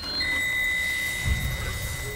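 Electronic sound effect for a hologram animation: a steady high tone over a hiss, with a low rumble about a second and a half in.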